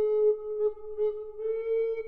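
A single flute-like woodwind playing a slow solo line of Renaissance music: a few repeated notes, then a step up to a longer held note near the end.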